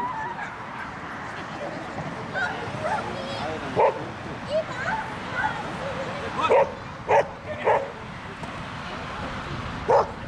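A border collie barking while it runs, short sharp barks standing out of a background of people talking: one about four seconds in, three about half a second apart in the second half, and one more at the end.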